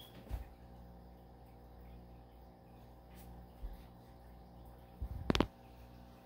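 Quiet room with a steady low hum, broken by a soft knock just after the start and a quick cluster of sharper knocks about five seconds in.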